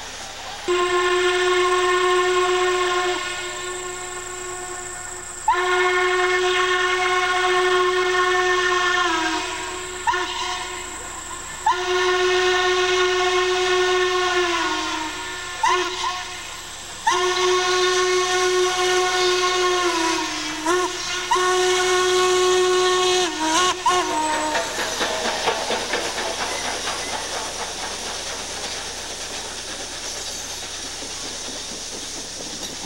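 Steam locomotive whistle blowing a series of long blasts with short toots between them, each blast sagging in pitch as it shuts off: the warning whistle for a grade crossing. The whistling stops about 24 seconds in, and the noise of the passing train follows.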